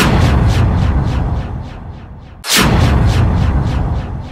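Two deep, booming cinematic hit effects about two and a half seconds apart, each followed by a trail of rhythmic echoes, about three a second, that fade away.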